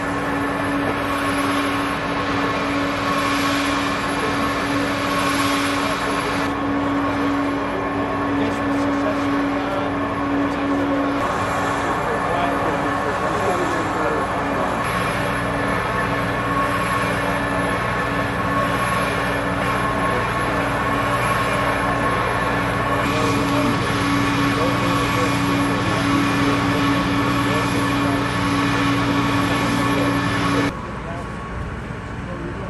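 Steady engine drone, like running vehicles or a generator: several constant tones that hold throughout, with a lower hum joining about halfway through, under faint indistinct voices.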